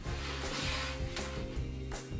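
Background music with held notes over a repeating bass line, with a brief hiss rising over it about half a second in.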